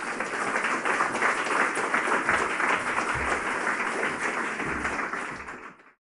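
Audience applauding steadily at the end of a lecture, cutting off suddenly just before the end.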